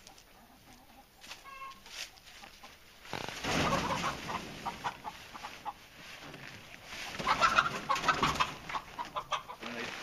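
Chickens clucking and squawking, alarmed by plastic greenhouse sheeting being dragged over the hoops, mixed with the sheeting's rustle. There are two louder stretches, about three seconds in and again about seven seconds in.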